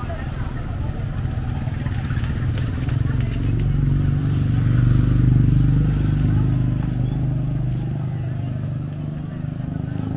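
Motorcycle engine running close by, growing louder to a peak about halfway through and then fading as it passes.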